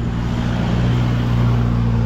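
Small motorbike engine running steadily under way, with wind noise on the microphone.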